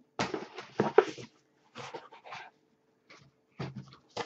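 Packing paper being pulled out of a cardboard shipping box, rustling and crinkling in several short bursts.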